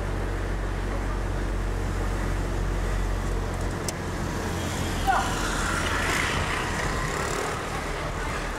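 Car engine running and road noise heard from inside a moving taxi, a steady low hum whose deepest part eases off a little before the middle.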